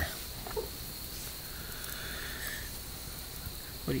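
Crickets trilling steadily in the night over a low background hiss, with a soft hiss that swells and fades in the middle.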